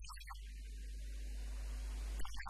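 Steady low electrical mains hum with hiss from the microphone and sound system, with no speech over it.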